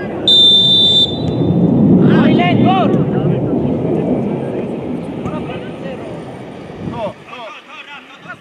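Referee's pea whistle blown once, a short shrill blast of under a second that signals the restart of play from a set piece. Shouting voices follow over a steady rumbling background.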